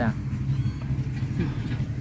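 Steady low rumble of outdoor background noise in a pause between spoken sentences, with a faint voice about a second and a half in.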